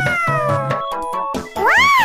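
Cartoon background music of short stepped notes, then near the end a high-pitched voiced exclamation that rises and falls in pitch, like a squeaky cartoon 'aha!'.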